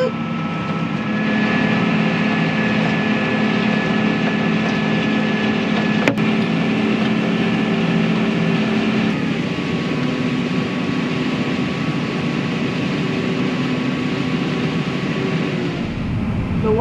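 Tractor engine running steadily under load while pulling a grain cart beside a combine harvesting corn: a steady hum with several held tones. There is one sharp click about six seconds in, and the hum changes slightly about nine seconds in.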